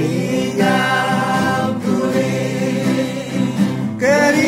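A group of voices singing a gospel hymn together, holding long notes, over strummed acoustic guitars.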